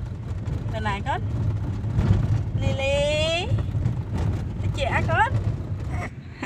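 Steady low rumble of a car on the move, heard from inside the cabin, with high-pitched voices speaking over it.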